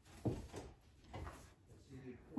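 A soft thump about a quarter of a second in, followed by a few fainter knocks and rustles: a toddler moving on a home gymnastics bar and its padded mat.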